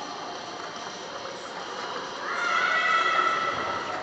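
Indoor pool hall noise of water and echo; a bit over two seconds in, a high-pitched shout or squeal from a person's voice rises briefly and is held for nearly two seconds, ringing in the hall.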